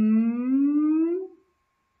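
A woman's voice stretching out a single letter sound while sounding out a word, held for about a second and a half with its pitch rising slowly.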